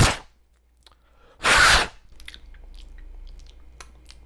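Two loud rushes of breath at a small circuit board held close to the face, about a second and a half apart, followed by a few faint light clicks.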